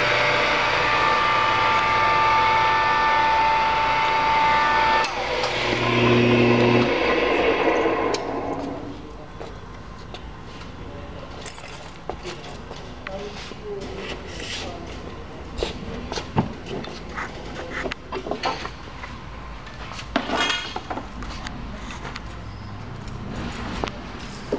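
Electric motor of a Challenge EH3A three-spindle paper drill running with a loud, steady whine. About five seconds in it changes to a lower hum, then winds down by about eight seconds. After that only scattered light clicks and knocks remain.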